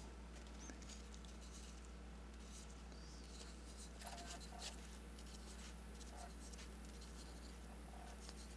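Faint scratching of a marker pen writing figures on paper, mostly in the second half.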